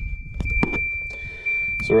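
A steady high-pitched electronic tone, with a low rumble at the start and two sharp clicks about half a second in.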